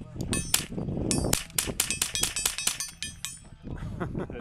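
A rapid run of sharp cracks and clicks, several a second, densest in the middle, some followed by a short high ringing. A voice comes in near the end.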